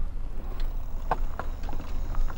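Wind rumbling on the microphone while moving, with a few faint clicks.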